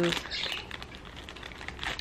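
A woman's voice trailing off at the end of a word, then a short pause of room tone with a few faint soft clicks.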